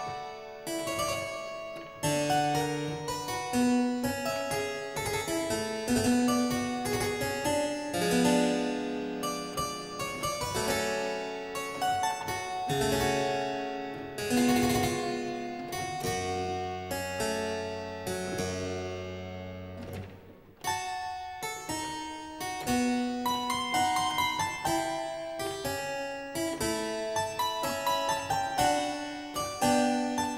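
Solo harpsichord playing a slow Baroque aria in B minor, with plucked notes over a held bass line. The playing breaks off briefly about twenty seconds in, then resumes.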